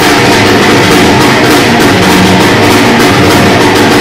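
Loud church praise music from a band with drums, played continuously at high volume.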